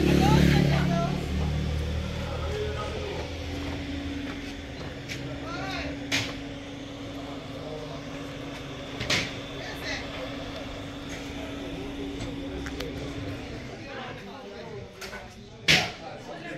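Faint background voices over outdoor noise, with a steady hum and a low rumble that is loudest in the first few seconds. Three sharp clicks or knocks come about six seconds in, about nine seconds in, and a louder one right at the end.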